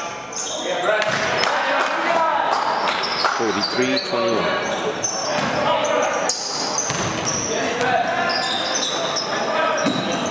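Basketball game in a gymnasium: the ball bouncing on the hardwood floor with repeated sharp knocks, and players and spectators calling out, all echoing in the large hall.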